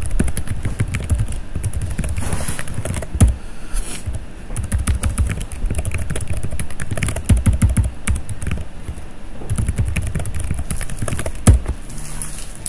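Typing on a computer keyboard: quick, irregular runs of key clicks with low thuds beneath, and one louder knock near the end.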